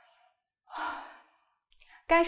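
A woman yawning: one breathy yawn lasting about half a second that trails off, then a short breath in near the end.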